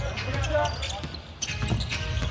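A basketball being dribbled on a hardwood court, with faint voices in the arena behind it.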